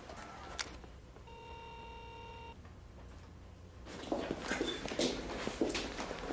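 A single steady electronic buzzer tone lasting about a second, followed from about two-thirds of the way in by a run of irregular knocks and clatter.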